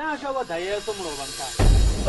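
A steady hiss over a man's voice; about one and a half seconds in, a loud deep rumble sets in.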